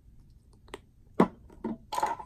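Handling clicks and knocks from a paint bottle and card palette: a few sharp, separate clicks, the loudest about a second in.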